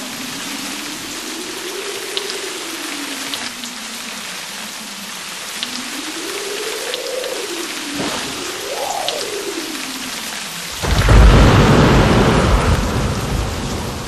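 Recorded rainstorm: steady rain hiss with a faint tone that slowly rises and falls several times, then a loud, deep rumble of thunder breaks in about eleven seconds in and fades away.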